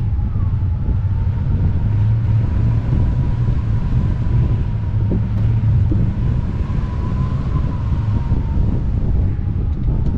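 Airflow buffeting the microphone of a hang glider in flight, a steady low rushing rumble, with a faint thin whistle holding one pitch and wavering slightly up and back.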